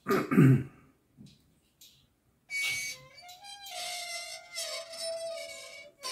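Threaded oil drain plug in a compressor pump's cast-iron crankcase squealing as it is turned out with locking pliers. The squeal is high-pitched and wavering, starts about two and a half seconds in and keeps changing pitch.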